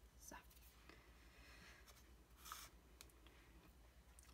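Near silence with faint paper handling: a few soft rustles and small clicks of card being moved, the clearest a brief rustle about two and a half seconds in.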